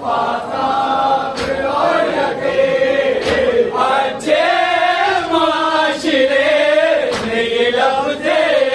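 Men chanting a tarahi salaam together, a held melody rising and falling in long sung phrases. Three sharp slaps cut through, at about one and a half seconds, about three seconds and near the end.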